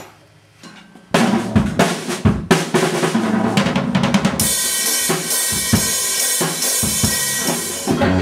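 Drum kit being played: kick and snare hits start about a second in, and cymbals wash over the beat from about halfway.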